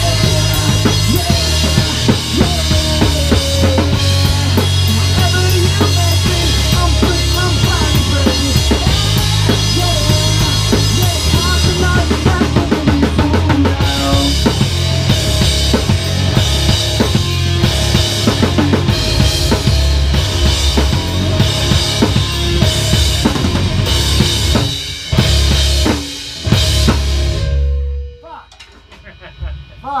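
A rock band playing loud in a small room: drum kit, electric guitar through Marshall amps and electric bass. Near the end the band hits two short breaks, then the song stops abruptly about two seconds before the end.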